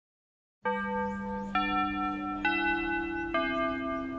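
School chime: four bell notes about a second apart, each left ringing, starting after a moment of silence. It is the bell marking a change of class period.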